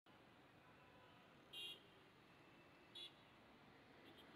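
Two short, high electronic beeps, about a second and a half apart, over near silence.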